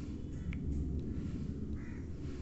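A bird calls faintly once near the end, over a steady low rumble.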